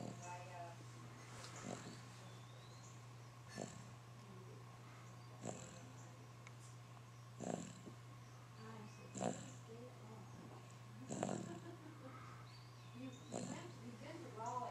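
A sleeping baby breathing noisily through an open mouth: faint snores or snuffly breaths about every two seconds, over a steady low hum.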